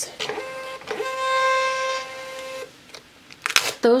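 Munbyn thermal label printer printing and feeding out a sticker label: its motor gives one steady, even-pitched whine for a little over two seconds, then stops abruptly.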